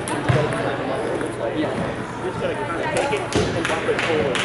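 Indistinct voices in a gymnasium, with a few sharp ball-bounce knocks, the loudest about a third of a second in and two more near the end.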